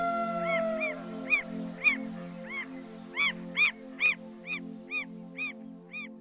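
An animal's short rising-and-falling calls, repeated about twice a second and louder in the second half, over soft background music with a low pulsing drone. A held note in the music fades out about a second in.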